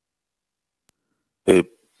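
Near silence, then about a second and a half in a single short, abrupt vocal sound from a man's voice on the video-call line.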